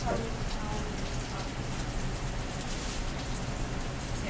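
Hot oil sizzling and crackling steadily around a piece of food shallow-frying in a small metal skillet.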